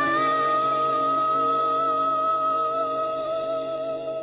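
A female singer holds one long note with a slight vibrato over sustained accompanying chords, as the song closes.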